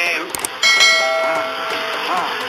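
A bell-like ding sound effect struck once about half a second in, ringing on with several steady tones and fading slowly, just after a short click.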